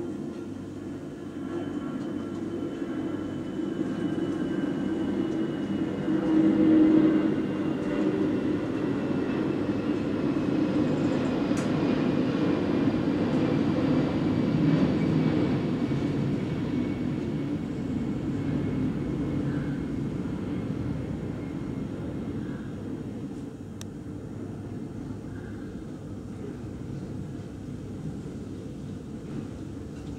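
Low rumble of a passing vehicle with a faint whine that slowly falls in pitch; it grows louder over the first few seconds, peaks about seven seconds in, and fades gradually.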